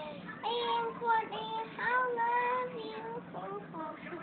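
A young child singing in a high voice, with a run of held notes that glide between pitches and short breaks between phrases.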